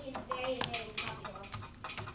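Light, scattered clicks and taps of small plastic objects such as Play-Doh tubs and lids on tabletops, over a faint murmur of children's voices.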